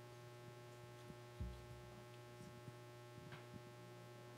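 Near silence: a steady low electrical hum from the room's sound system, with one soft low thump about a third of the way in.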